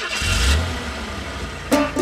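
Cartoon bus engine sound effect: a low rumble with a hiss over it that swells in the first half-second and then fades. Banjo music comes in near the end.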